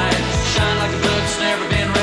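Rock band playing an instrumental passage with a steady drum beat and no singing.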